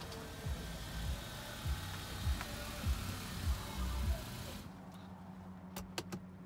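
A car rolling slowly across a rain-soaked parking lot under a steady hiss of rain and wet pavement, with irregular low thumps of wind on the microphone. About four and a half seconds in the outdoor hiss cuts off and a steady low hum inside a car follows, with a couple of clicks near the end.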